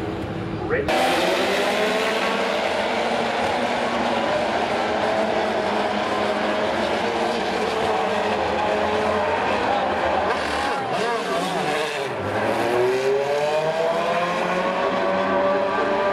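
IndyCar open-wheel race car engines running at high revs past the grandstand, their pitch falling as they brake and climbing as they accelerate. The sound jumps in sharply about a second in. Near the middle the pitch dips low, then rises steeply again as a car accelerates away.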